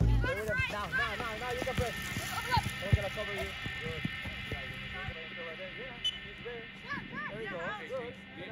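Several young players and people on the sideline shouting short calls over one another during open play in a youth soccer match. A faint steady high tone sits underneath.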